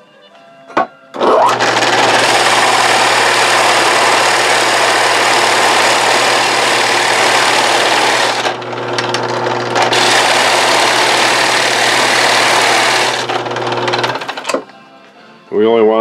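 Drill press boring a 1.5-inch hole in a wooden board with a Forstner bit: the motor starts about a second in and runs with a steady low hum under loud cutting noise. The cutting eases briefly about halfway through, then the press stops a little before the end.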